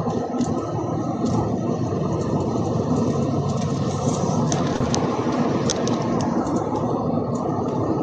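Steady low rumbling noise with a few faint clicks.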